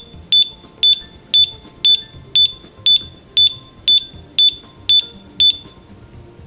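Tango TX1 gas detector beeping: a short high beep about twice a second, stopping near the end. It sounds while the detector's gas reading falls back toward zero after the test gas is taken away at the end of a bump test.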